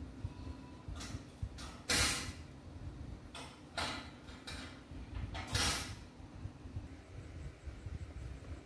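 Crocheted yarn fabric being handled and slid across a tabletop as it is spread flat, heard as several short rustles, the loudest about two seconds in, over a low background rumble.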